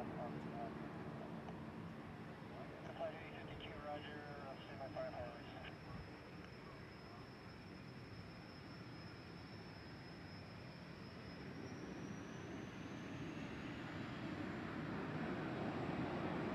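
Distant twin turbojets of a Messerschmitt Me 262 replica running with a thin high whine that climbs in pitch about eleven seconds in, as a rumble builds and grows louder toward the end: the engines spooling up.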